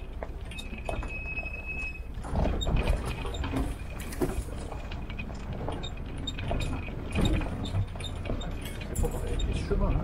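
Military-style Jeep running slowly along a rough dirt track: a low engine rumble with the body and loose gear rattling, clinking and knocking over the bumps. A thin steady squeal sounds for about the first two seconds.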